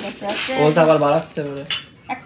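Dry puffed rice (muri) rustling and rattling in a plastic tub as a hand scoops out a handful, starting with a sharp click, with a voice over it in the middle.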